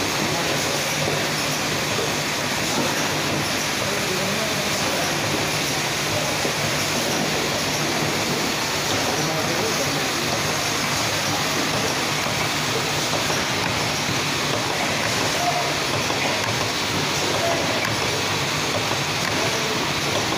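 Automatic eyedrop bottle packing line running: a steady machine noise from the conveyor and bottle-feeding equipment, with a low steady hum underneath.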